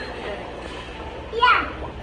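Background voices, with one short, loud, high voice sound falling in pitch about one and a half seconds in, over a low steady hum.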